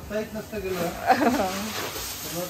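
Garden hose spray hissing as water is sprayed onto potted plants, with voices talking over it.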